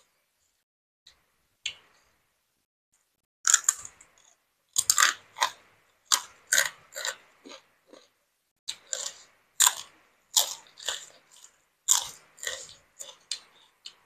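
Crunchy food being bitten and chewed close to the microphone: a few faint clicks, then from about three and a half seconds in a dense, irregular run of sharp crunches, several a second.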